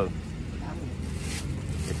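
Steady low rumble of market background noise, like a nearby engine running, with faint voices in the middle.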